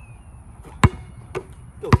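Basketball bouncing on an outdoor court surface: two sharp bounces about a second apart, with a fainter one between.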